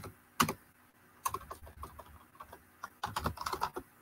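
Typing on a computer keyboard in bursts of keystrokes: a single keystroke about half a second in, a run about a second in, and a faster run near the end. The keys are typing, deleting and retyping a word.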